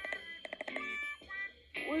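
Children's cartoon soundtrack played from a screen: a rapidly pulsing, warbling tone over background music, then a cartoon character's voice starting near the end.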